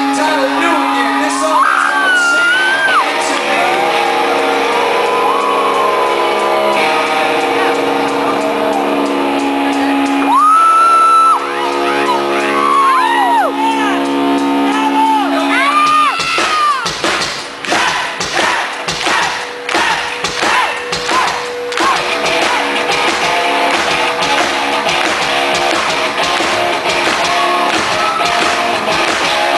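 Live rock band amplified in a large venue: a quieter opening of held guitar chords with a singer's voice rising and falling over them, then about 17 seconds in the full band comes in, with steady beats running through the rest.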